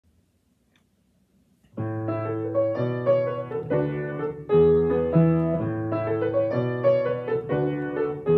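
Upright piano playing the chordal introduction of a song, coming in about two seconds in after a near-silent start, with the chords restruck in a steady rhythm and the bass note changing every second or so.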